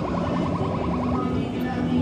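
Claw machine hoisting its claw back up after a grab, with a rapid run of ticks, about fourteen a second, for the first second, then a steady low tone.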